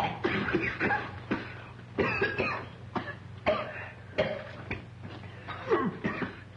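Several boys coughing in a string of short coughs, one or two a second, choking on cigar smoke they are not used to.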